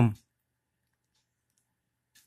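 The end of a spoken word, then near silence with a couple of faint clicks from handling a small plastic digital clock and its buttons.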